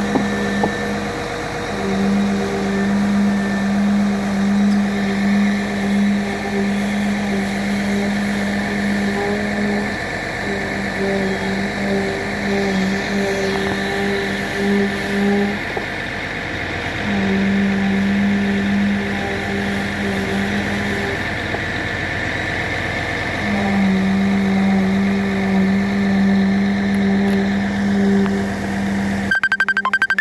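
Concrete poker vibrator humming in stretches of several seconds, cutting out and starting again while it is worked through freshly poured concrete in a retaining-wall formwork, over an engine running steadily.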